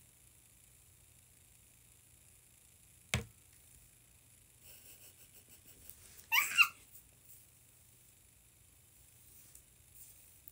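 Quiet room tone with a single sharp knock about three seconds in, then a young woman's short, high-pitched laugh that rises in pitch a little past the middle.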